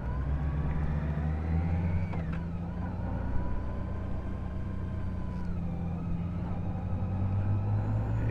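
Touring motorcycle engine running steadily at low road speed, heard from the rider's seat.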